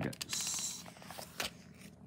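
Paper rustling as rulebook pages are turned, with a few light clicks; the rustle is loudest in the first second, then fades to a faint shuffle.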